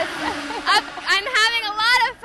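Speech: women's voices talking.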